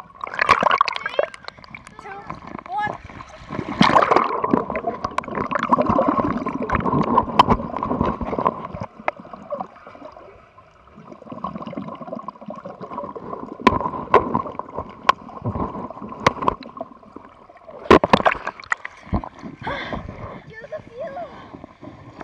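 Heard underwater in a swimming pool: bubbles gurgling as swimmers blow air out, with water sloshing and many sharp clicks and splashes.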